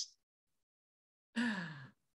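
Near silence, then a woman's voice beginning a drawn-out, falling "All…" about a second and a half in.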